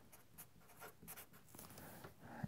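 Faint scratching of a Sharpie felt-tip marker on paper: a few short pen strokes writing a label.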